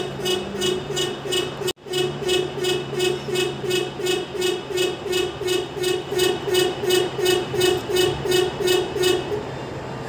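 Tipper truck's reverse warning horn beeping rapidly and evenly, about three beeps a second, over the steady hum of the truck's diesel engine. There is a brief cut-out a little under two seconds in, and the beeping stops just before the end.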